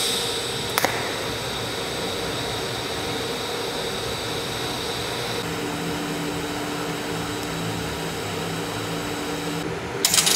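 TIG welding arc on 3 mm steel: a steady buzzing hiss with held tones. Its pitch shifts about halfway through, and it stops just before the end.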